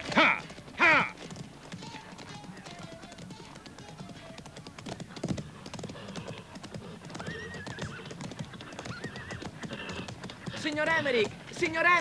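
Horse hooves clopping on hard ground, with horses neighing loudly twice just after the start and again, quavering, near the end. Quiet film music sits underneath.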